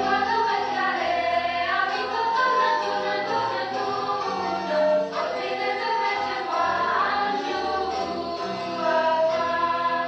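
Music: several voices singing together as a choir over an instrumental accompaniment with held bass notes.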